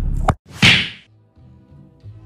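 Low car-cabin rumble cuts off with a sharp click about a third of a second in, followed by a loud whoosh sound effect from a subscribe-button outro animation, then faint low music notes.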